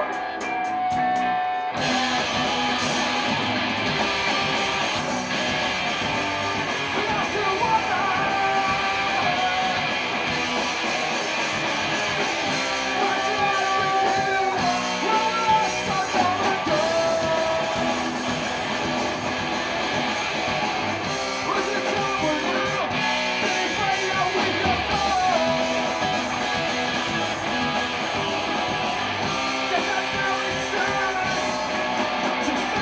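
Punk-rock band playing live on electric guitars, bass and drums. The music is sparser for the first couple of seconds, then the full band comes in and plays on loudly.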